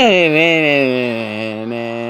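A person's voice holding one long drawn-out note, its pitch sliding slightly lower and then steady.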